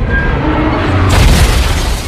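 Film sound effect of a city bus crashing down onto snowy ground: a heavy rumbling boom that swells and turns harsher about a second in.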